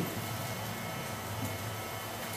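Room tone in a pause between spoken sentences: a steady, quiet hiss with a faint low hum and no distinct events.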